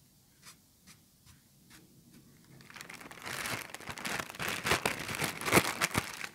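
Clear plastic bag crinkled and crumpled between the hands close to the microphone. A few faint clicks come first, and the crinkling starts about three seconds in, growing louder toward the end.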